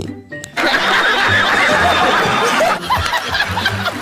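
Many people laughing and chuckling, a laugh-track effect, over background music with a steady bass; the laughter starts about half a second in and thins out after the middle.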